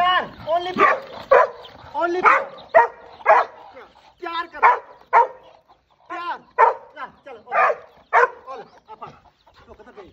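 Black Labrador giving short, excited yips and barks about twice a second, some bending up and down in pitch like whines.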